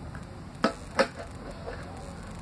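Two sharp clacks, about a third of a second apart, of small hard plastic toy dishes being set down and knocked together.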